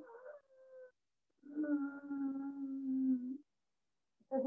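A woman's voice holding long, steady chanted notes at one pitch. One note ends about a second in, and after a short pause another is held for about two seconds, then cut off.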